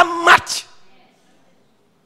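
A man's voice through a microphone, a few final syllables with a briefly held vowel, ending about half a second in, followed by a pause in near silence.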